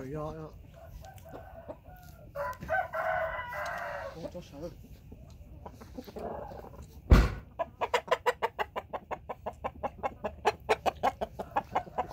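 A rooster crows once, a long call starting a couple of seconds in. About seven seconds in comes a single sharp knock, then a fast, even run of clicks, about six a second.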